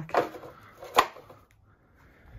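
A single sharp knock about a second in, followed by faint rustling: something hard being bumped or set down while cluttered items are handled.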